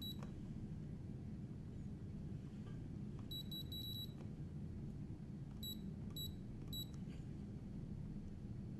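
Key beeps from the remote controller of a Nitto Kohki Delvo brushless electric screwdriver as its buttons are pressed. There is one beep at the start, a quick run of about six beeps a little after three seconds in as the screw count steps up, then three separate beeps as it steps back down, all over a steady low hum.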